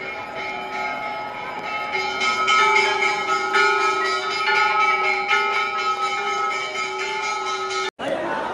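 Temple bells ringing continuously during an aarti, over the noise of a dense crowd of worshippers.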